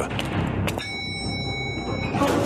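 Elevator arrival chime used as a sound effect in a radio drama: a short click, then a bell-like ding that holds for about a second, over a low background music bed.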